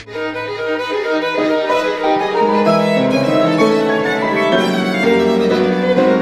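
Classical violin music: a violin playing a line of long sustained notes over lower accompanying notes.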